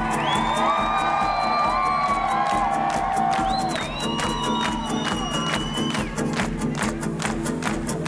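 Two acoustic guitars playing live, with a crowd cheering and whistling over the music. A steady percussive strumming beat comes through more clearly near the end.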